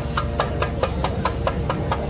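Traditional temple percussion playing a fast, even beat of sharp strikes, about seven a second, over a steady low rumble.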